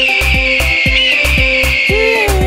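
An eagle screech sound effect, one long high scream that slowly falls in pitch, laid over an upbeat dance music track with a steady kick-drum beat.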